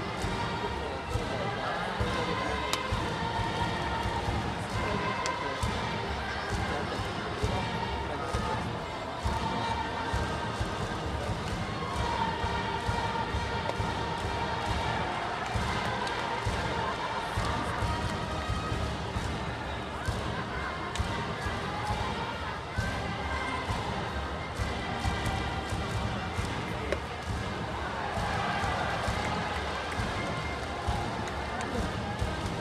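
High school baseball cheering section in the stands: many voices chanting to a steady drum beat, with brass band music.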